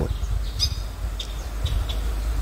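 A few short, high bird chirps in the first second and a half, over a steady low rumble.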